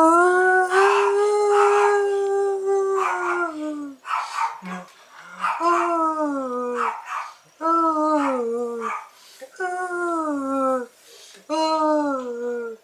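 A man singing wordless vowels a cappella. A long held note comes first, then a run of shorter sustained notes, each sliding down in pitch, with brief breaths between them.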